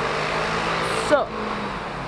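City street traffic: a steady rush of passing cars, easing slightly after the first second.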